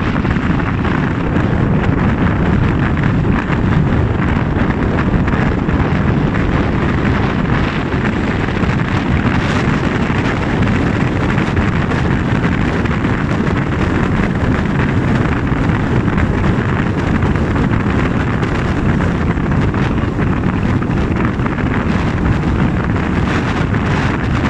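Steady road and wind noise from a car driving at motorway speed, with wind rumbling on the microphone.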